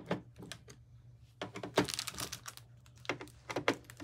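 Screwdriver working the screws out of a motherboard's CPU cooler mounting bracket: irregular small clicks and taps, in a cluster about a second and a half in and another about three seconds in.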